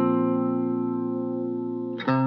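Guitar intro of a song: notes picked one after another just before, left ringing together and slowly fading, with a new note struck at the very end.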